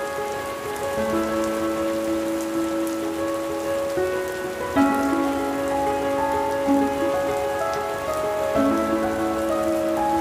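Steady rain falling, over slow music of long held notes that move from one chord to the next every few seconds.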